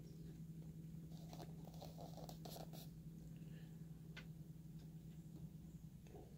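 Near silence over a steady low hum, with a few faint soft rustles and ticks from the pages of a small paperback art book being handled and turned.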